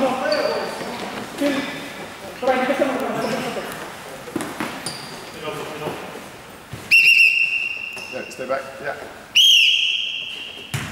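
A referee's whistle blown twice, two long steady blasts, the second starting just before the end, signalling the kick-off on the centre spot. Before it, players shout and the ball knocks on the hard court in a large, echoing hall.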